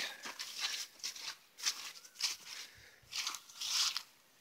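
Footsteps crunching through dry fallen leaves and grass, an irregular crackle about every half second.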